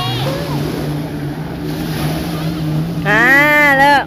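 A baby's loud cry, about a second long, rising and then falling, about three seconds in, over the steady low drone of a boat engine out on the water and the wash of surf. The baby is frightened by the waves.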